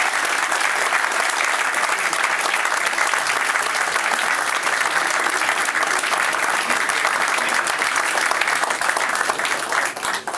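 A room full of people applauding: steady, dense clapping that breaks off at the very end.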